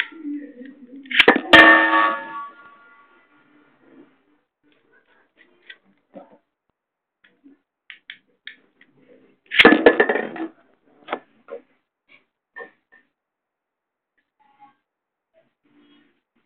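Metal Beyblade spinning tops clashing in their stadium. There is a loud metallic clang with ringing about a second and a half in, a second burst of clashing around ten seconds in, and scattered light clicks between.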